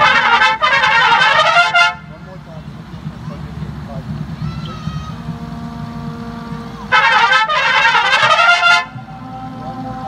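Drum corps trumpet line playing two loud ensemble phrases in unison, each about two seconds long and briefly broken partway, the second coming about five seconds after the first. Between them, quieter held notes and murmur carry on.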